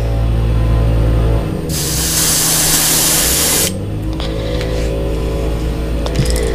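Gravity-feed airbrush spraying paint in one steady hiss of about two seconds, starting about two seconds in and cutting off cleanly.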